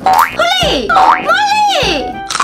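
Cartoon boing sound effects, several in a row, each swooping up and then down in pitch, over background music.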